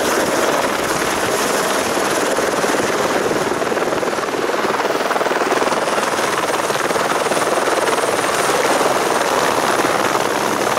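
Helicopter hovering and manoeuvring low close by, its rotor and engine noise loud and steady.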